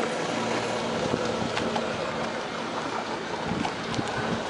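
Small solar-powered car rolling on asphalt: a steady low hum from its drive over a hiss of road and outdoor noise, with a few light clicks.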